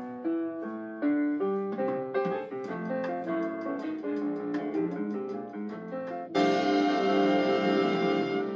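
Piano music, a run of separate notes and chords, ending on a loud full chord struck about six seconds in that rings on.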